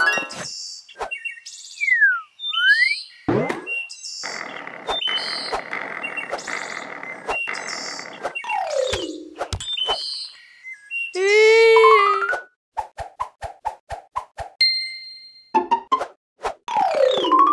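Playful cartoon sound effects over light children's music: slide-whistle-like glides up and down and springy boings, then a steady rattling noise lasting about four seconds. Near the end come a wobbling rising tone, a quick run of ticks and a short ding.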